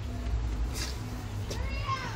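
A woman's short, high, muffled whimper with a rising, bending pitch in the second half, made through a mouthful of ground cinnamon as she struggles to swallow it, over a low steady outdoor rumble.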